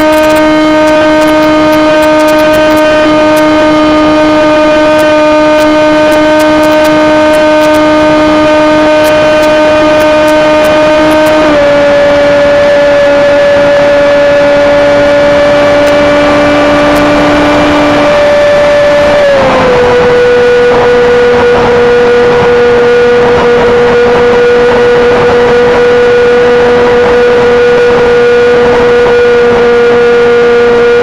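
Model airplane motor and propeller heard close up from an onboard camera, running at a steady speed. Its pitch drops in a step about a third of the way in and again about two-thirds in as the throttle is eased back, then falls once more at the very end.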